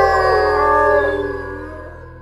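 Several dogs howling together on held notes at different pitches, over a low sustained music drone; the howls fade away from about a second in.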